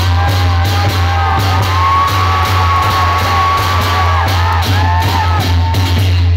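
Newar dhime drums and hand cymbals played together in a loud, driving rhythm of about three strokes a second. Shouts and whoops ring out over the drumming.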